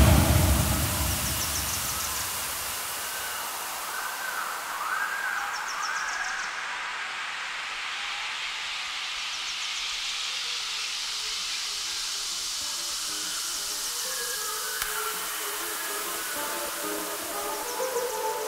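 Breakdown in a minimal techno track: the kick drum drops out at the start and its tail fades over a couple of seconds, leaving a long hissing noise sweep that rises slowly in pitch, with a faint repeated synth figure. A new pulsing synth pattern comes in near the end.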